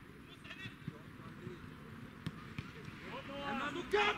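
Players shouting to each other on an outdoor football pitch, the calls getting louder near the end, with a few short thuds of the ball being kicked.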